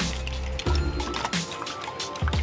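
Background music with a steady low note, under a spoon beating eggs in a ceramic bowl.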